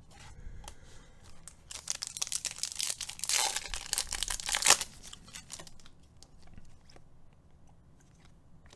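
Foil wrapper of a Topps Finest baseball card pack being torn open and crinkled by hand. The crackling runs for about three seconds and ends in a sharp final tear, followed by soft clicks of the cards being handled.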